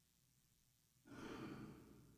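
A single sigh-like exhale starts suddenly about a second in and fades over about a second, against near-silent room tone.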